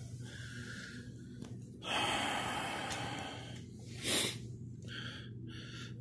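A man breathing heavily while working under a truck: a long exhale about two seconds in, a short sharp breath just after four seconds, then quicker short breaths near the end.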